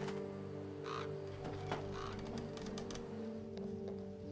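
Sustained low music drone, with a crow cawing twice, about a second in and again a second later.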